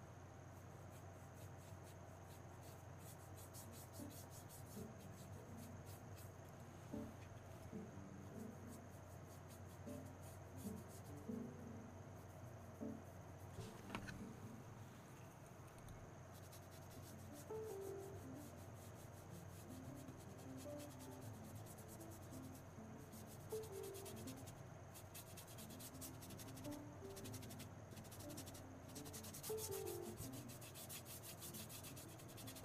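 Faint scratchy rubbing of a paintbrush working acrylic paint onto canvas in short, repeated strokes, over a low steady hum.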